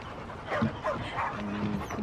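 A dog whimpering and yipping faintly, with a brief low whine about one and a half seconds in.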